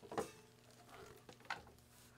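Faint handling knocks and rustles as an electric guitar is picked up and brought into playing position, with a sharper click just after the start and another about a second and a half in.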